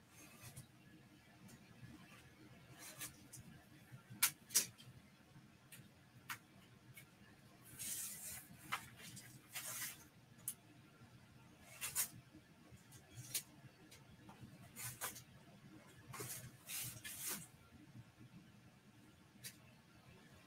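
Craft knife cutting through a laminated vinyl print on foam board: faint, irregular scratchy strokes, some longer scraping passes and a few sharp clicks.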